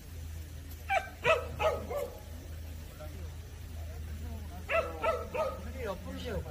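A Jindo dog barking: a quick run of about four sharp barks a second in, and another run of four or five near the end.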